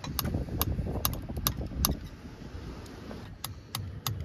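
Hammer tapping a screwdriver held against a 4WD's bare front wheel hub: a string of short, sharp metal taps at uneven intervals, about nine in all, with a pause in the middle. A low rumble runs underneath.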